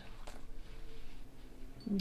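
Faint rustling and light ticks of leather cord being handled and tugged through a knot, over a low room hum.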